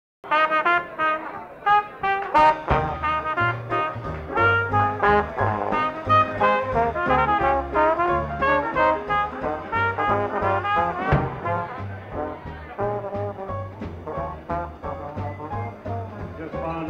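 Live traditional jazz band playing, with cornet and trombone lines over a bass line underneath. Quick, busy melody notes throughout, with sharp drum or cymbal accents at about two seconds in and again around eleven seconds.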